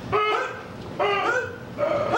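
Dog-like barking: short yelping barks at about one a second, each rising in pitch and then holding briefly.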